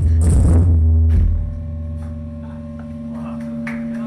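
Live band music: a loud passage with a heavy low chord and bright shaker or tambourine hits stops about a second and a half in. A steady drone of a few held notes rings on after it.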